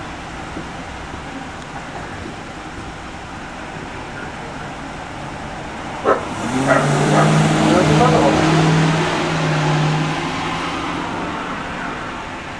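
A vehicle driving past on the street: its engine hum and tyre noise swell about six seconds in, peak, and fade over the next few seconds, over a steady background hiss.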